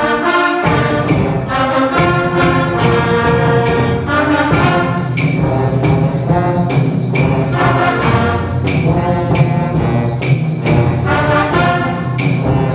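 Sixth-grade concert band playing a samba: brass and woodwinds sounding sustained chords, with the percussion section coming in about four seconds in with sharp, evenly spaced strikes keeping the beat.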